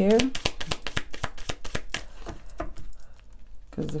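Tarot deck being shuffled by hand: a quick run of small card clicks and flaps, several a second, thinning out and stopping about three seconds in.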